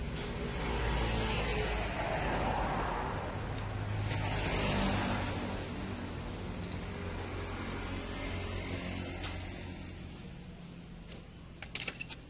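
Steady background traffic noise that swells as a vehicle passes about four to five seconds in, then eases off. A few sharp clicks come near the end.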